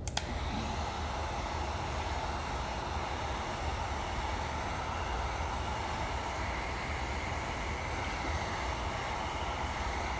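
Electric heat gun switched on with a click, then running steadily, its fan blowing hot air onto wet clay handle pieces to dry and stiffen them so they can be lifted.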